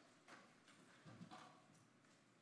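Near silence: room tone in a pause between spoken phrases, with a couple of faint, brief soft sounds, one about a second in.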